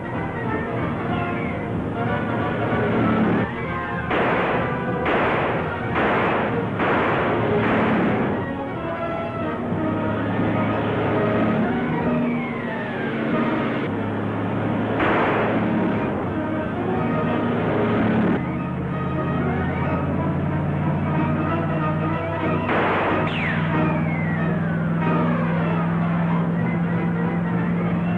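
Dramatic orchestral film score. It has held chords, descending runs, and sharp accented hits, several of them about four to eight seconds in and more near the middle and end.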